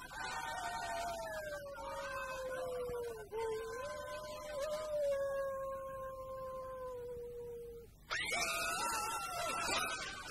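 A canine howl: one long held howl slowly sinking in pitch, then, after a brief break about eight seconds in, a second howl that slides sharply upward.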